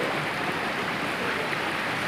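A fast, rocky river rushing through white-water rapids: a steady, even rush of water.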